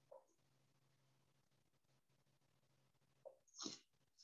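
Near silence: room tone with a faint steady low hum, broken near the end by a short breathy noise.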